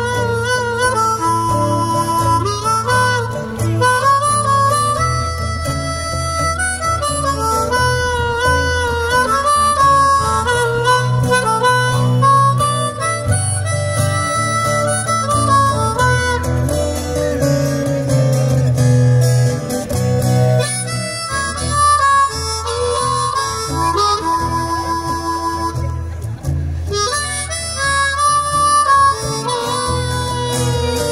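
Harmonica solo, its notes bending up and down, played into a microphone over a strummed acoustic guitar accompaniment.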